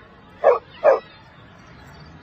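A dog barking twice, two short barks close together.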